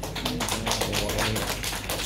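Applause from a small audience: many overlapping hand claps.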